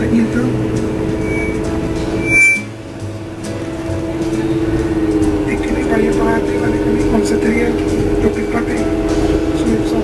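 Steady drone of a moving tour bus heard from inside the cabin: engine hum and road noise, with indistinct voices. A short sharp click comes about two and a half seconds in, and the sound drops briefly before the drone picks up again.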